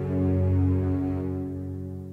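The closing chord of a ballad's instrumental accompaniment, held and ringing out. It swells slightly at the start, then fades away steadily.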